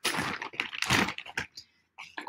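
Costume jewelry clicking and clattering as pieces are rummaged through and set down: a rapid run of light clicks that stops about a second and a half in.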